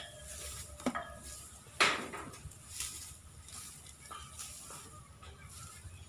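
Cut grass and hay rustling and crackling as elephants pick it up and swing it with their trunks, in a few short bursts, the loudest about two seconds in.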